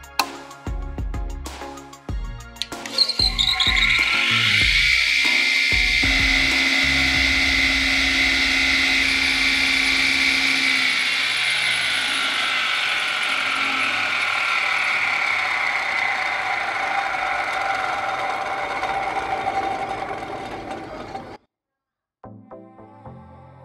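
A few clicks, then the electric motor of a homemade battery-powered table saw starts about three seconds in and spins the belt-driven circular blade with a steady high whine. The pitch sinks slowly in the second half, and the sound cuts off abruptly just before the end.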